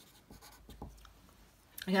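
Marker pen writing on a white board, a few faint short scratchy strokes as letters are written.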